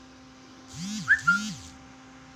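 A short whistle-like sound about a second in: two quick swoops that rise and fall in pitch, over a faint steady hum.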